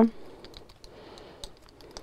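Clothes hangers clicking faintly a few times as a hanging tracksuit is handled and swapped on the rail.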